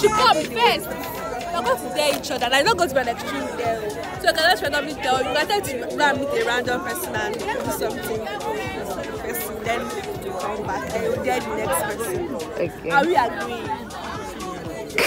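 Several people talking and chattering over quieter background music.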